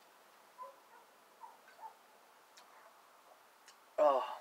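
Quiet background with faint short chirps every half second or so and two light sharp clicks in the second half.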